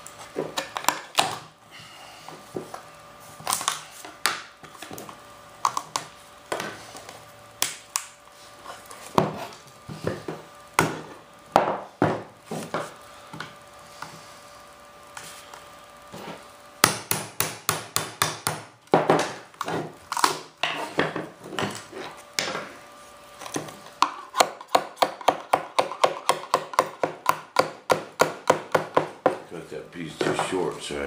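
Scattered knocks and taps of a wood-and-fiberglass mold box being handled and worked apart on a workbench. Near the end they become an even run of about three taps a second.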